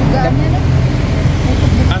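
Steady low rumble of a motor vehicle engine running close by, with a brief voice sound near the start.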